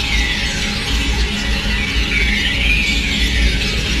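Harsh experimental noise music: a loud, dense wash of static over a steady low drone, with a whooshing sweep that rises and falls about every three seconds.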